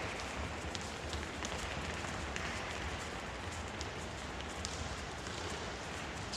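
Many children's light, bouncing footfalls on a sports hall floor: a dense, continuous run of soft steps with scattered sharper taps.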